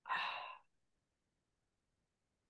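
A man's short breathy sigh, about half a second long, at the very start.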